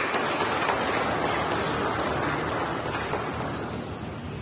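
Audience applauding, a dense patter of hand claps that starts suddenly and slowly dies away.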